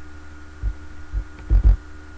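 Dull low thumps over a steady electrical hum: one about two-thirds of a second in, another just past a second, and a quick double thump near the end, which is the loudest.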